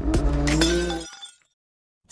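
Logo intro sting: a couple of sharp hits over a low drone and a pitched tone. The drone cuts off about a second in and the rest fades to silence.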